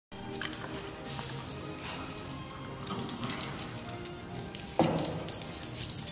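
Puppies wrestling on a concrete floor, their claws clicking and scrabbling, over music playing in the background. A louder rush of scuffling noise comes about five seconds in.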